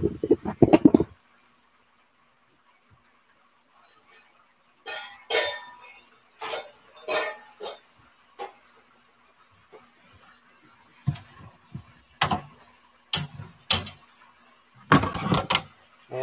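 Metal kitchenware clattering and clinking in a series of separate knocks as a wire cooling rack is fetched and handled, with a quiet stretch of a few seconds before the clatter starts.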